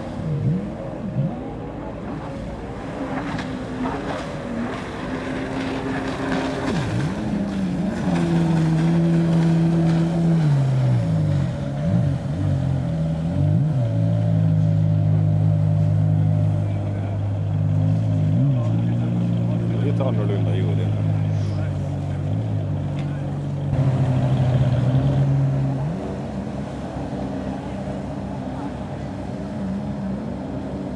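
Personal watercraft engines running on open water, their pitch rising and falling as the riders throttle through turns. The engine note is louder and steadier from about a quarter of the way in until near the end, then eases off.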